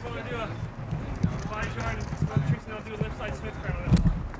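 Skateboard on a wooden halfpipe ramp: low rumble and scattered knocks from the board, with a sharp clack near the end, heard under background voices.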